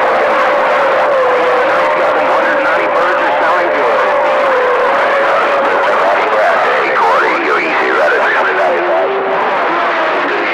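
CB radio receiver output on channel 28 in the 11-metre band: a steady hiss of static with garbled, unintelligible voices buried in it. A steady whistle, the beat of two carriers on the same channel, wavers slightly in pitch over the first six seconds. About eight seconds in, a lower whistle replaces it.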